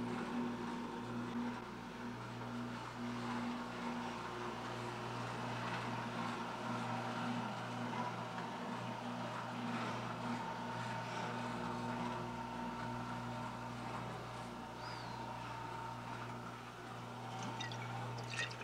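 Electric stair-lift motor running steadily with a low, even hum, carrying the chair slowly up the stairs.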